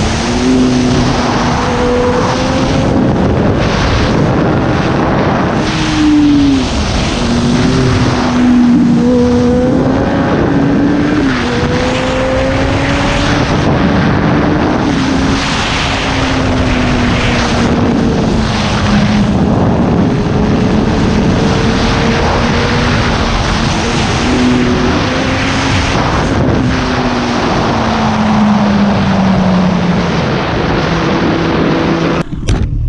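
Kawasaki ZX-10R sport bike's inline-four engine running under riding load, its pitch rising and falling with the throttle and dropping sharply a few times, over a steady rush of wind noise.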